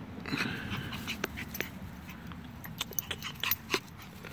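A Yorkshire terrier gives a short whimper about half a second in. Then come a string of sharp clicks and rubbing as its fur brushes against the microphone.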